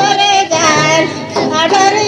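Mundari folk dance song: a high female voice sings held, wavering notes over a steady instrumental accompaniment.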